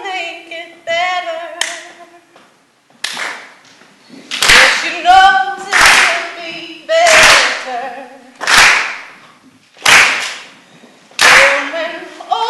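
A woman singing unaccompanied, with sharp hand claps from about three seconds in, one roughly every second and a half. The claps are the loudest sounds and ring on in the hall. There is a short pause in the singing before the claps begin.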